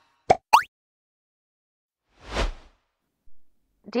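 Editing sound effects for a segment change: two quick rising plops about a third of a second in, then a single whoosh that swells and fades a little over two seconds in.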